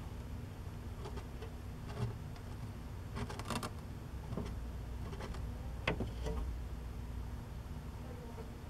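Metal tweezers clicking and tapping as superworms are set down on the enclosure floor: a quick run of small clicks about three seconds in, then a few single ticks, the sharpest near six seconds. A steady low hum runs underneath.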